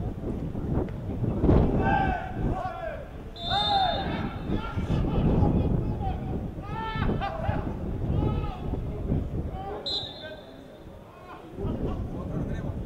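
Footballers shouting on the pitch, with two short blasts of a referee's whistle: one about three and a half seconds in, and a shorter one near ten seconds.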